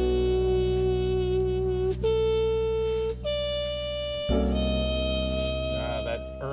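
Smooth jazz recording: a reedy wind instrument plays four long held notes, each higher than the one before, over a steady bass.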